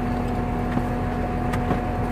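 Steady hum of an idling vehicle engine, with a few light knocks scattered through it.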